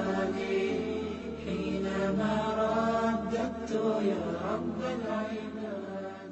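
Chanted vocal music: a voice chanting a slow, wavering melody over a steady low drone.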